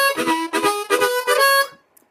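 Blues harmonica playing a vamping shuffle: a rhythmic run of short chords, about three to four a second, stopping just before the end. It is the shuffle sound usually got by tongue blocking, here played puckered, without tongue blocking.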